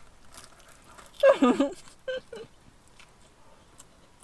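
A short, wordless vocal sound with a wavering pitch about a second in, loud against an otherwise quiet car interior, with a couple of brief softer vocal sounds just after it.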